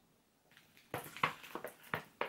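Near silence, then from about a second in a quick run of light knocks and rustles of cardboard: the trays of a yarn colour-pack box being lifted and handled.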